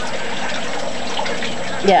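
Pellet stove running in its start-up cycle: a steady rushing whoosh from its fans while the pellets in the burn pot have not yet caught.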